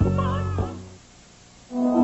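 A rooster crowing briefly, a short wavering call over a held music chord that ends about half a second in. After a short quiet gap, a new chord of music starts near the end.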